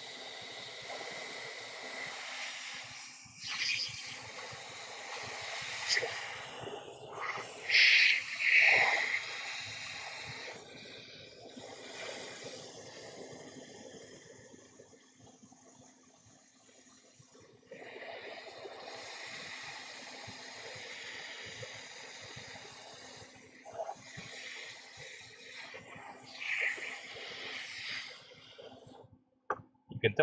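A stream of blown air hissing steadily over a phone logic board to cool it after hot-air removal of the Tristar chip. It drops away for a few seconds in the middle, and there are brief louder bursts about eight seconds in.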